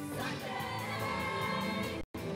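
Show choir singing sustained chords in harmony over band accompaniment, moving to a new chord shortly after the start.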